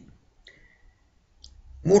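A pause in a man's talk, with a couple of faint clicks and a brief faint thin tone, before his speech starts again near the end.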